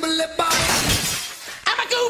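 Music breaks off into a sudden shattering crash, like glass breaking, that fades over about a second; a voice starts near the end.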